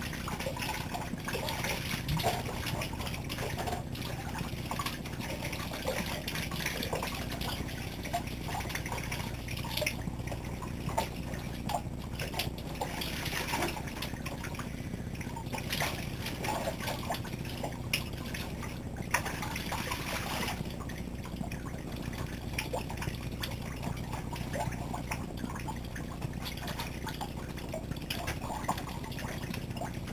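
Shower running: water spraying from the shower head and splashing over a person's head and body in a small shower stall. The splashing is steady but shifts unevenly in strength as he moves under the stream.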